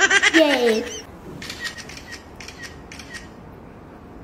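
A run of faint, light clicks at irregular spacing, some ten or so over about three seconds, starting about a second in.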